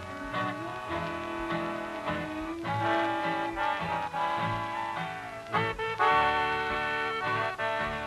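Old-time country band music playing: held melody notes over a steady bass beat, on a 1940s radio transcription recording.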